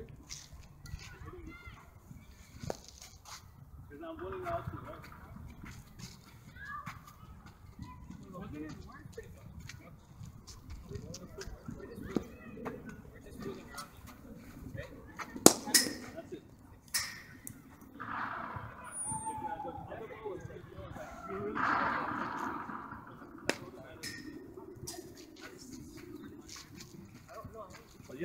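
A cricket bat striking a ball once with a sharp crack about halfway through, followed by a softer knock about a second later, among scattered faint clicks and distant voices.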